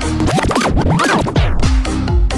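Loud electronic dance music from a DJ mix with a heavy, bass-boosted beat. For about the first second and a half it is overlaid by a record-scratch passage of quick back-and-forth pitch sweeps.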